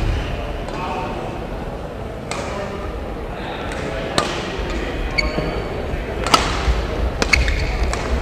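Badminton rally: a racket striking the shuttlecock, several sharp cracks about one to two seconds apart, echoing in a large sports hall.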